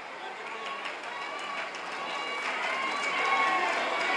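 A large crowd cheering and shouting, many voices together, growing steadily louder.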